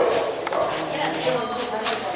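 Indistinct chatter of several people talking at once in a crowd.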